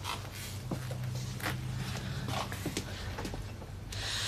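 Hurried, irregular footsteps and small knocks of two people moving quickly around a pub bar, over a low steady hum.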